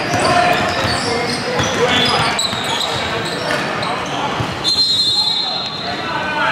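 A basketball dribbled on a hardwood gym floor, bounces echoing in a large hall, amid players' voices.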